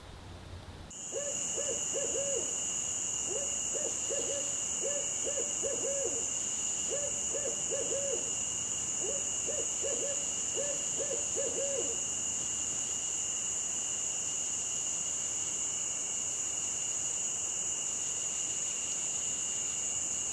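An owl hooting in short runs of two to four notes, over a steady high-pitched chorus of night insects. The hoots stop about twelve seconds in, leaving only the insects.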